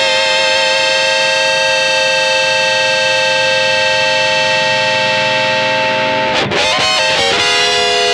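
Electric guitar played through a Keeley Octa Psi fuzz and octave pedal with its fuzz and octave both engaged: a thick, fuzzed chord rings out and is held. About six and a half seconds in, a new chord is struck and held.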